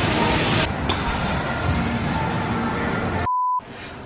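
A steady rushing noise that turns abruptly louder and brighter for about two seconds, then stops and gives way to a short single-pitch beep.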